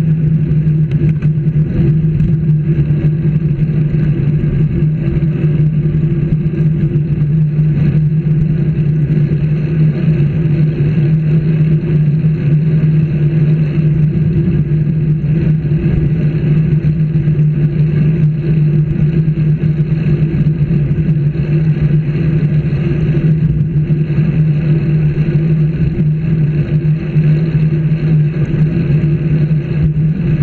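Steady drone and road rumble of a moving road vehicle, picked up by a camera mounted on it, holding one low pitch without change.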